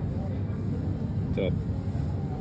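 Steady low background rumble, with one short spoken exclamation about a second and a half in.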